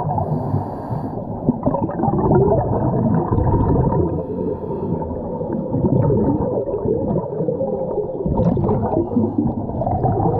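Muffled underwater rumbling and gurgling of a scuba diver's exhaled bubbles, picked up by a camera underwater, with a brief brighter bubbling burst about eight and a half seconds in.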